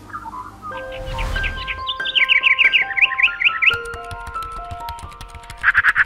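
Intro music of held notes stepping through a slow melody, opening with a whoosh about a second in, with bird chirps over it: a fast run of repeated chirps in the middle and another burst near the end.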